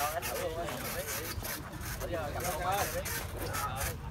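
Indistinct voices of people talking at a lower level, over a steady low background rumble.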